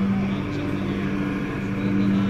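A steady low hum, with a second, slightly higher tone joining about half a second in.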